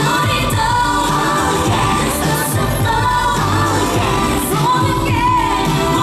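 Live K-pop performance: women singing into handheld microphones over a loud backing track.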